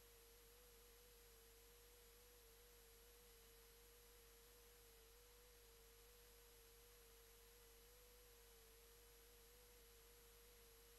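Near silence, with a faint steady tone just under 500 Hz that wavers slightly in pitch, and a fainter, very high steady whine above it.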